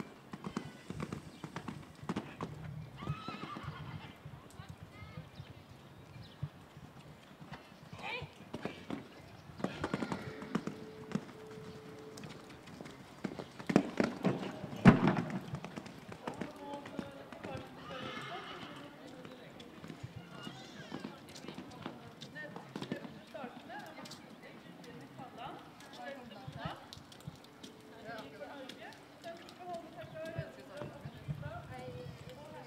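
A show-jumping horse cantering on a sand arena, its hoofbeats coming as scattered soft thuds, with a loud thud about halfway through. Faint voices can be heard in the background.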